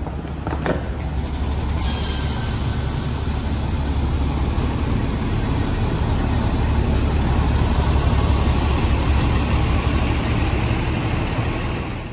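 Steady low rumble of an idling bus engine, with a broad hiss that starts sharply about two seconds in and carries on evenly.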